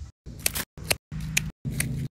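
Hand pruning snips cutting through cucumber stems: four sharp snips about half a second apart.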